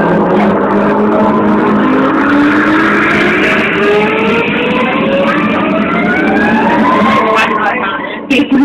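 Loud dance music from a DJ mix with a rising pitch sweep that builds steadily over several seconds, a build-up riser. The music thins out right at the end, just before the track drops back in.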